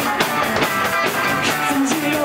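Live rock band playing electric guitars over a drum kit, with the drums struck in a steady beat.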